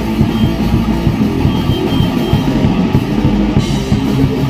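Rock band playing live at full volume: a drum kit with busy drum and cymbal hits under electric guitars, in an improvised jam.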